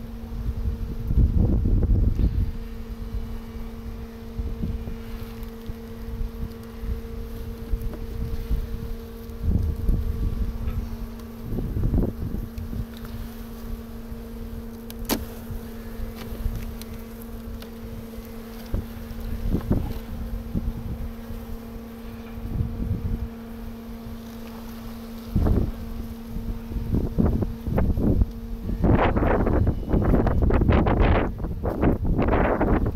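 Honeybees of a strong colony humming steadily over the opened hive, with gusts of wind rumbling on the microphone several times.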